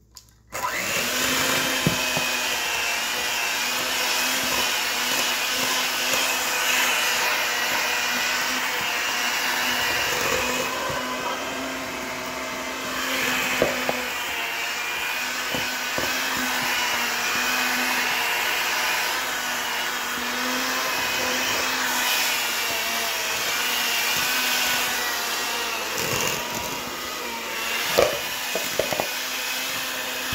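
Electric hand mixer switching on about half a second in and running steadily, its beaters churning a flour and cocoa mix in a stainless steel bowl, with a few knocks of the beaters against the bowl near the end.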